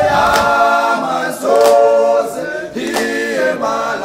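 Background music: a choir of voices singing long held chords that change about once a second, with little or no instrumental backing.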